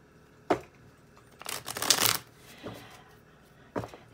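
Tarot cards being handled and shuffled: a short burst of rapid card flicks about a second and a half in, with a single sharp tap before it and another near the end.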